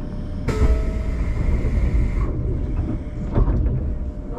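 A train's compressed air hissing out for about two seconds, starting half a second in and cutting off sharply, over the steady low rumble of a train at the platform.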